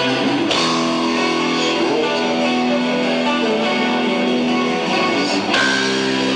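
Metal band playing live without vocals: electric guitars holding chords over bass and drums, with a sharp hit about half a second in and again near the end.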